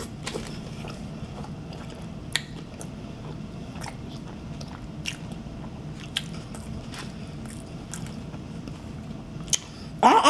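A person biting into and chewing a mouthful of Burger King Whopper close to the microphone, with short wet mouth clicks and smacks about once a second over a low steady hum.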